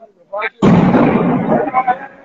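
A loud explosive blast goes off about half a second in, with an abrupt start and a rumble that dies away over a little more than a second. Two short shouts come just before it.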